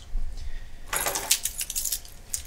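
A jingling rattle of many small, sharp clicks, lasting about a second and starting about halfway through.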